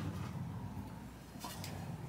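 Faint handling noise of a wooden neck blank being picked up off a workbench, with a couple of light clicks about one and a half seconds in, over low room rumble.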